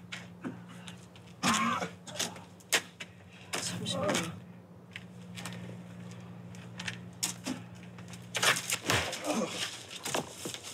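Brief voices and short movement sounds over a low, steady hum.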